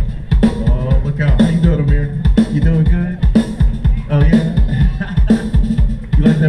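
Live funk band playing a groove over a steady kick-drum beat, with the electric rhythm guitar featured.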